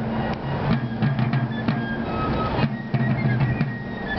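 Fife and drum music: rope-tension field drums beat rapid strokes under short, high fife notes.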